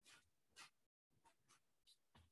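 Near silence on the call line, broken by about five faint, short clicks.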